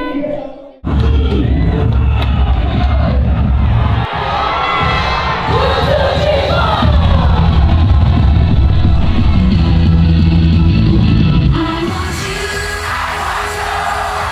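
Loud pop music with heavy bass at a live idol-group concert, with a cheering, yelling crowd. It starts after a brief gap about a second in; near the end the bass falls away and the singing stands out more.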